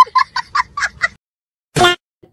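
Edited-in meme sound clip of a child's high-pitched cackling laughter in rapid short bursts, about five a second, stopping a little after a second in. Near the end comes a single short quack-like honk.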